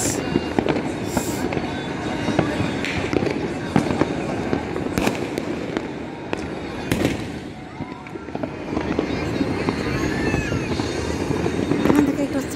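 Fireworks and firecrackers going off across a city at once: a dense, unbroken crackle of many pops, with several sharper bangs standing out, the clearest about five and seven seconds in.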